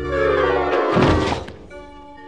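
Cartoon background music with one heavy thud about a second in: a comic sound effect of a man fainting and dropping onto a bed.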